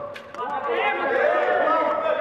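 Several voices calling out and talking over one another, the shouts and chatter of footballers and onlookers during play.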